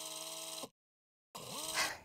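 Short news-show transition sting: a held chord of several steady tones that cuts off sharply after under a second, then, after a gap of silence, a second electronic sound rising in pitch about a second and a half in.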